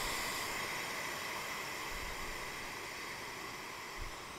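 Air hissing out of an EZ Inflate queen air mattress through its opened deflation valve, driven only by the mattress's own pressure with the pump off. A steady hiss that slowly gets quieter as the air escapes.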